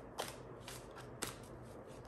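A tarot deck being shuffled overhand, faint, with light slaps of cards about every half second.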